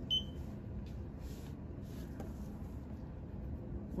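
A single short electronic beep from a Fisher Scientific Accumet desktop pH meter as its standby button is pressed to switch it on. After that there is only a low, steady room hum.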